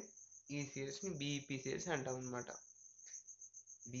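A steady high-pitched cricket trill, pulsing quickly and evenly, under a man talking for about two seconds.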